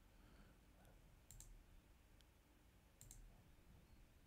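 Near silence with two faint mouse clicks, one about a second and a half in and one about three seconds in.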